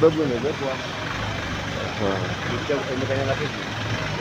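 Voices talking intermittently over a steady background rumble of road traffic.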